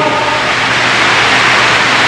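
Steady, loud hiss with a faint low hum underneath, with no distinct impacts or footfalls standing out.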